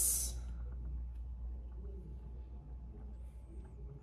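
Quiet room tone with a steady low hum and faint, soft handling as hands press Play-Doh down on a wooden table. A spoken word trails off at the very start.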